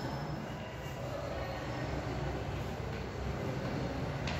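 Steady low rumble and hum of background noise, without clear breaks or strokes.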